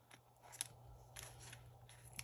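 Faint clicks and crinkles of clear plastic cash envelopes being handled in a ring binder: a few sharp clicks, the loudest about half a second in and another just past a second.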